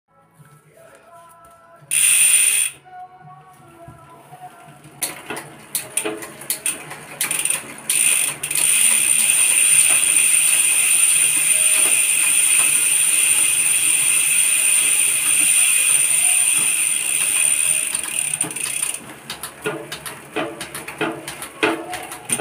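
Bicycle drivetrain with a Shimano Deore M6100 12-speed rear derailleur, the rear wheel spun on a stand: chain clicking and clattering over the cassette, then a long steady high whirring buzz of the spinning wheel and ratcheting hub, then clicking again near the end. A short loud rush of noise comes about two seconds in.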